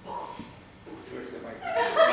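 A stage actor's voice: a short faint utterance just after the start, a quiet pause, then a loud, high voice breaking in near the end and rising in pitch.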